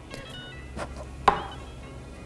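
A few light taps of a makeup brush against a blush compact's lid, knocking off the excess powder, over faint music.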